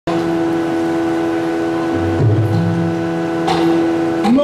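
Steady shruti drone holding one pitch, the tonic reference for Yakshagana singing. Low drum tones and a couple of sharp strokes join it about halfway through.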